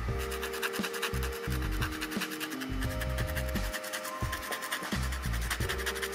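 Sandpaper rubbing against the end of a small wooden dowel in quick, repeated strokes, rounding off its edges. Background music with held notes plays throughout.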